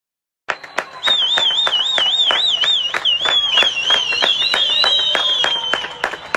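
People clapping together in a steady rhythm, about three claps a second, starting about half a second in. Over the clapping a high warbling whistle sounds, and after a few seconds it splits into several gliding whistled tones.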